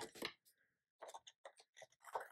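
Scissors snipping through a sticker strip: a quick run of faint, short clicks in the second half.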